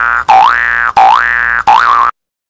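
Cartoon 'boing' sound effect repeated in quick succession: each one slides up about an octave, holds briefly and cuts off, about three times in two seconds, the last one short and wavering.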